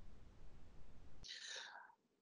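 Quiet line hiss, broken about a second and a quarter in by a brief soft whispered murmur of a man's voice.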